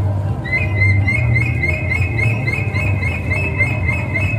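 A rapid, evenly repeated high chirping, bird-like, about five chirps a second, starting about half a second in, over a steady low rumble.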